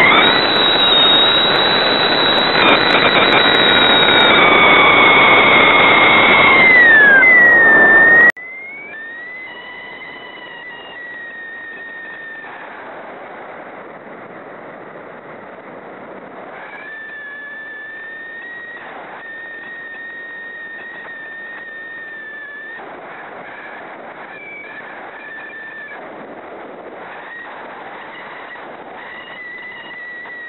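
A model rocket motor burning, heard from a camera on the plane: a loud rushing roar with a high whistle that bends downward near the end. It cuts off abruptly about eight seconds in at burnout. After that there is quieter airflow hiss with a steady high whistling tone that drops in and out while the plane glides.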